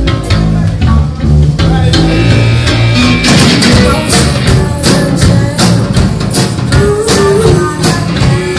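Live punk rock band playing amplified in a club: bass and guitar at first, then the drums and cymbals come in hard about three seconds in and the full band drives on.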